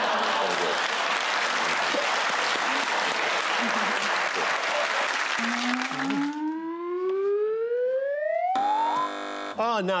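Studio audience laughing and applauding for about six seconds, then a single tone gliding steadily upward for about three seconds. It ends in a flat electronic buzz of about a second from a contestant's buzzer on the panel desk.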